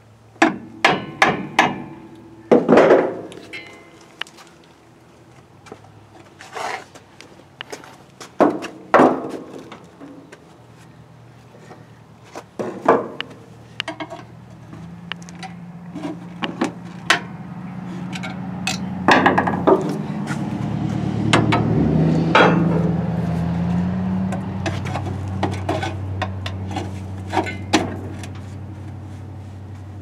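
Irregular hammer strikes on the rusted front brake drum of a 1967 Ford Galaxie 500, coming thick in the first half and more scattered later, as the seized drum is knocked to free it from shoes suspected to be rusted to it. A low drone swells and fades through the second half.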